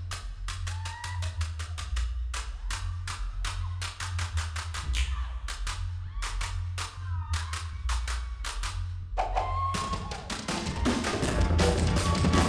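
Tahitian ori drumming: rapid, sharp wooden to'ere slit-drum strokes over a steady low pahu bass-drum beat. Near the end the ensemble fills out and grows louder.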